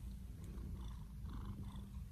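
Domestic cat purring with a low, steady purr.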